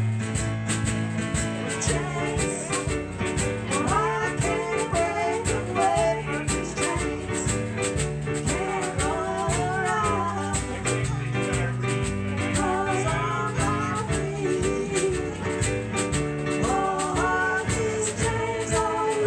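Live band music: women singing over a drum kit beat and two electronic keyboards playing a 1960s pop song.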